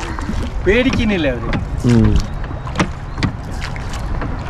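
Rowboat being rowed with a pair of oars: several sharp knocks as the oars work in their rowlocks.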